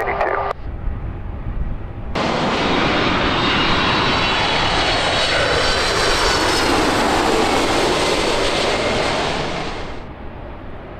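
Delta Boeing 767 twin-jet on final approach: engine whine with high fan tones over a broad rush, starting suddenly about two seconds in and easing off slightly near the end as the airliner reaches the runway.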